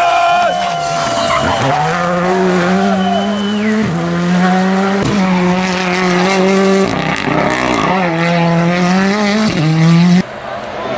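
Rally cars' turbocharged four-cylinder engines running hard at high revs through tarmac hairpins, the note changing abruptly several times with gear changes. Tyres squeal near the start.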